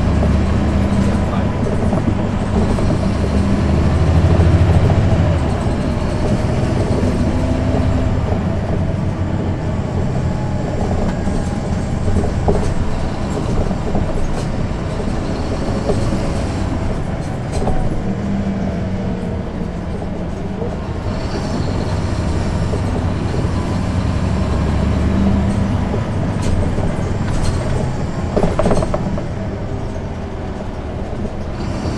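Interior sound of a NABI 40-SFW transit bus, its rear-mounted Caterpillar C13 ACERT diesel and ZF Ecomat automatic transmission heard from the back seat: a steady loud drone that swells and falls off a few times, with a few sharp clicks and knocks.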